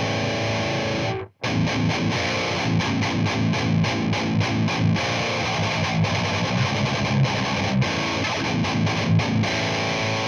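Distorted electric guitar played through an amp and speaker cabinet, miked at the edge of the speaker. A held chord cuts off about a second in, then comes fast, choppy riffing with many abrupt stops, ending on a ringing chord near the end.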